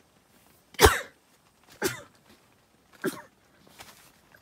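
A person coughing three times, about a second apart, the first cough the loudest.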